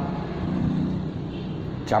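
Low rumble of a passing road vehicle in the background, with the man's speech starting again near the end.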